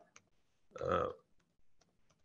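A short pause in a man's speech: one brief vocal sound about a second in, with a few faint clicks from a laptop's keys under his hand.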